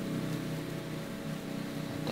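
A steady low mechanical hum, such as a motor running in the background, with no distinct knocks or scrapes.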